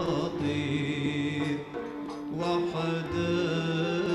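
Gharnati (Andalusian classical) music performed live by an ensemble, with chant-like voices holding long notes over the accompaniment; the sound dips briefly near the middle.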